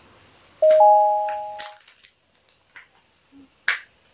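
A sudden two-note chime, the higher note joining a moment after the lower, holding for about a second. Around it come several sharp clicks or snips from handling the lip liner's plastic packaging, the loudest near the end.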